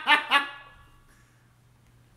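A man's hearty laughter, a quick run of 'ha' bursts that trails off about half a second in.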